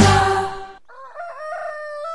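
Trailer music stops short just under a second in, and a rooster crows: a few short rising notes, then one long held note.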